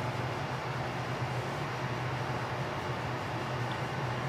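Steady low hum with an even hiss: constant background room noise with no separate events.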